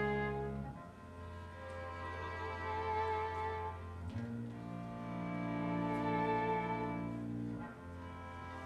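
Chamber orchestra strings playing slow, sustained chords. Each chord swells and then fades, and the harmony shifts about a second in and again around four seconds in, with a new chord just before the end.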